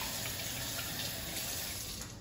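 Kitchen sink faucet running steadily as hands are washed under the stream, the water cutting off near the end.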